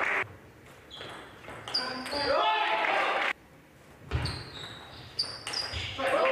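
Celluloid-type table tennis ball clicking on the table and bats in pairs of sharp ticks about a third of a second apart, each with a short high ring, over a quiet hall. The tail of applause fades right at the start, and a voice is heard briefly in the middle.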